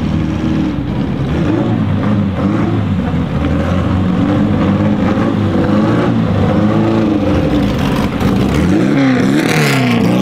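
Porsche 550 Spyder 1500 RS's four-cam 1.5-litre flat-four engine running loudly as the car drives off and accelerates, its revs climbing and changing in steps. Near the end the revs rise and fall quickly several times.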